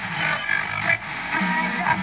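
FM radio sound from a Superscope by Marantz R-1240 stereo receiver as its tuning knob is swept across the band. Brief fragments of stations and noise between stations change abruptly.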